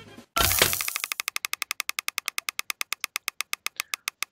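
The case-opening sound effect of a mystery-box website's prize reel: a short burst of noise, then rapid, evenly spaced ticks, about a dozen a second, as the reel of items scrolls past, spacing out slightly toward the end as it slows.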